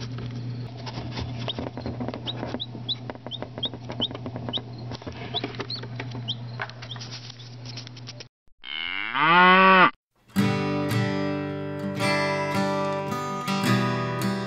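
A five-hour-old chick peeping: about a dozen short, high, rising peeps over a steady low hum. About eight seconds in comes one loud, rising cow moo, the loudest sound, and then acoustic guitar strumming starts.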